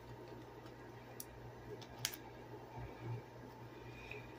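Faint handling of a plastic 4K Blu-ray case: a few light clicks, the sharpest about two seconds in, and a soft bump near three seconds. A steady low hum from a running ceiling fan lies under it.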